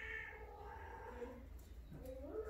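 Persian cat giving one long, drawn-out call, the calling of a female cat in heat. It fades out about a second and a half in.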